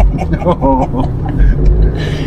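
Steady low rumble of a car's engine and tyres heard from inside the cabin while driving, with a short voice over it about half a second in.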